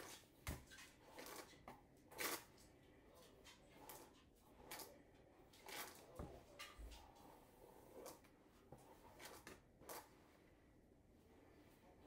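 Faint, irregular swishes of a hairbrush being drawn through long hair, about one stroke a second, working out tangles.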